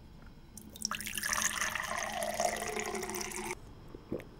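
Water poured from a pitcher into an empty drinking glass: a steady pour filling the glass for about three seconds, starting about half a second in and stopping abruptly.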